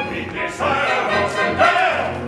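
Opera chorus singing with the accompaniment, the voices coming in about half a second in and holding sung notes.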